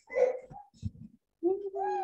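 A woman's voice over a video call: a short spoken fragment, a few brief low sounds, then a drawn-out hesitation sound starting about one and a half seconds in.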